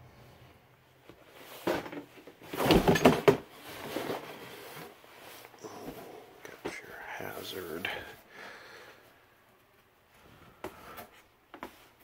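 Indistinct talking in a small room, loudest about three seconds in, then a few short knocks near the end.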